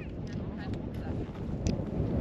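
Wind buffeting the camera's microphone: a steady, uneven low rumble with no clear rhythm. A wind buffer that isn't fitted properly lets the gusts through.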